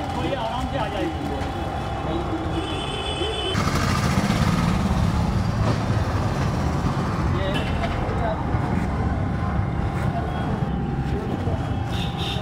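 People talking in the background. About three and a half seconds in, a steady low vehicle engine rumble sets in and carries on under the voices.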